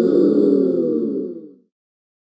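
A chorus of cartoon alien toy characters saying a long, awed "ooooh" together, several voices in unison that slide slowly down in pitch and fade out about a second and a half in.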